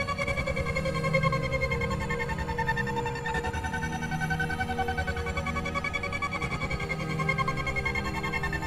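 Electronic breakbeat hardcore/jungle track: held synthesizer chords over a fast, even pulsing rhythm, at a steady level.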